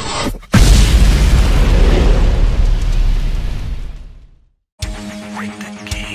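A cinematic intro sound effect: a rising whoosh that cuts off, then a sudden deep boom that rumbles and fades away over about four seconds. After a brief silence, the song starts near the end with guitar notes.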